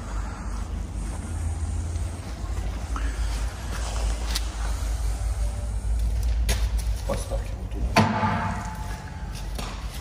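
A steady low rumble with a few sharp knocks, the loudest about eight seconds in, followed by a short metallic ring.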